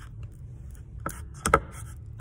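Metal fork knocking and scraping against the sides of a plastic cup as it is pulled through a thick pink mixture: two sharp clicks about a second in, the second louder.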